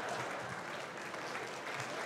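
Audience applause after a stand-up punchline, slowly dying away.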